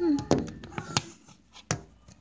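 A held hummed note ends with a falling slide right at the start, then a few sharp knocks and clicks from a phone being handled and turned around, the loudest about 1.7 seconds in.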